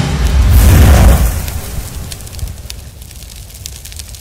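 Cinematic boom sound effect in a title-intro soundtrack: a deep rumbling hit with a hissing top that swells for about a second and then fades away over the next few seconds, with music underneath.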